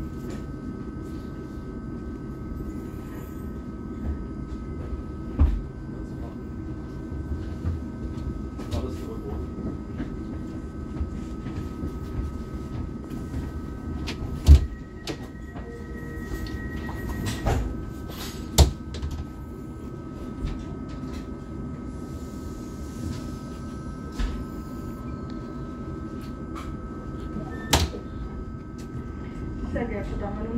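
Steady hum of a double-deck regional train standing at a platform, heard from inside the carriage, broken by several sharp knocks and clunks, the loudest about halfway through.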